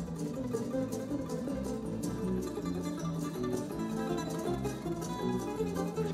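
Portuguese guitar (guitarra portuguesa) played solo: a melody of short plucked notes following one another at a fairly even level.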